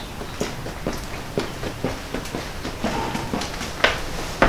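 Footsteps on paving stones, about two steps a second, growing slightly louder as the walker approaches, with a sharper step just before the end.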